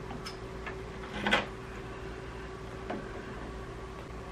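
A few light clicks and taps of hand and tool on the plastic parts of a 3D printer's toolhead, the sharpest about a second and a half in, over a steady faint hum.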